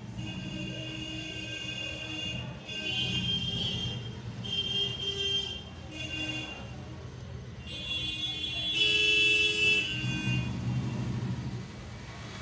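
Road traffic with an engine rumble underneath and repeated vehicle horn blasts, each held about a second, the longest and loudest near the end.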